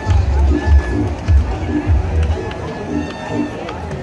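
Batucada drum ensemble playing a fast, repetitive rhythm, led by loud deep bass-drum beats. The bass beats drop away about two and a half seconds in while the rest of the rhythm goes on.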